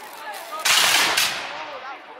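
A volley from a block of black-powder muskets firing blank charges: a ragged burst of shots about half a second in, a second crack half a second later, then dying away.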